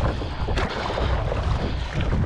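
Wind buffeting the microphone over open sea, with choppy water slapping against a kayak and a brief splash about half a second in.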